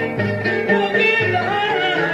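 Traditional Algerian Constantinois song: a woman's voice singing an ornamented, wavering melody over an instrumental ensemble with a low, steadily changing bass line.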